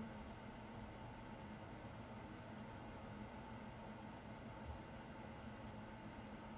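Faint, steady background hiss: room tone and microphone noise, with no other sound.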